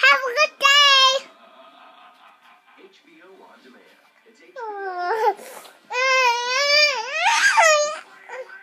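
Young child's high-pitched vocalising, squeals and babble in bursts: a couple near the start, a falling cry about five seconds in, and a longer wavering one near the end.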